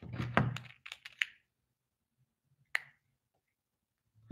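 A few soft, short clicks in the first second or so, then one more click a little past halfway.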